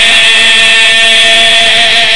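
A man's voice, amplified through a microphone, holding one long chanted note with a slight waver, as in the drawn-out chanting of a majlis recitation.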